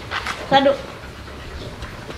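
A Shiba Inu panting. A trainer gives a short spoken "sit" command about half a second in.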